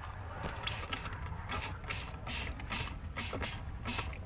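A hand-held painting tool scraped and dabbed over wet acrylic paint on sketchbook paper: short scratchy strokes, a few a second, over a low steady rumble.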